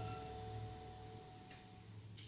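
The last held note of a fiddle and acoustic guitar fading away at the end of a tune, the final tone dying out near the end and leaving a low hum.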